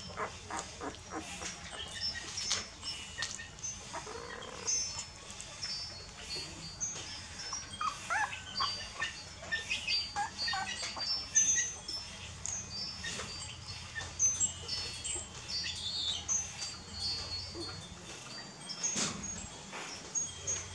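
A litter of young puppies suckling at their mother: many small wet clicks and smacks, with short high whimpers and squeaks, most of them near the middle.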